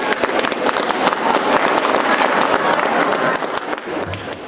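Audience applauding, dense clapping from many hands.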